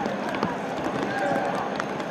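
Busy street ambience: indistinct voices of passers-by over a steady background hiss, with a few sharp footstep-like clicks.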